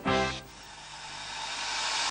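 Children's TV ident jingle: a short musical chord, then a rising whooshing hiss that swells for about a second and a half and cuts off suddenly.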